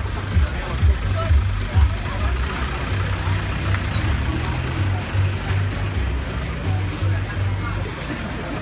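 Roadside sound by a songthaew pickup-truck taxi: its engine running and indistinct voices of passengers, with background music's bass line underneath.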